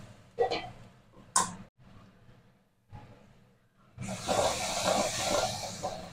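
Near silence with a brief sharp sound about a second and a half in, then from about four seconds in a steady sizzle of tomato masala frying in hot oil in a kadai.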